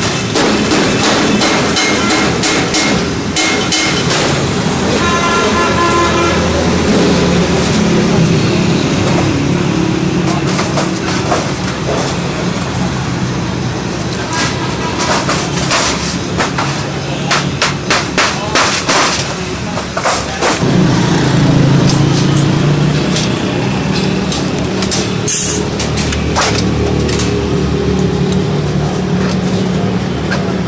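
Clicks and clinks of thin stainless steel sheet being trimmed and handled with hand tools, over steady background traffic noise.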